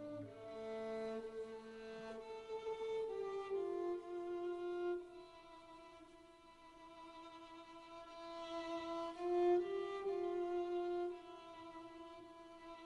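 String ensemble playing slow, held notes with the violin line on top. The low notes stop just after the start, the sound thins out in the middle, then swells again about nine seconds in before dropping back near the end.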